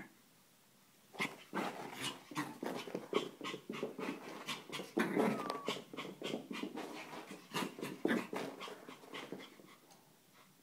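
Maltese dog panting hard and snuffling close to the microphone, in a fast, irregular run of breaths with a few brief pitched grunts. It starts about a second in, and the panting comes from excited zoomies play.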